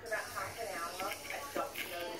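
Quiet, indistinct speech from a young girl.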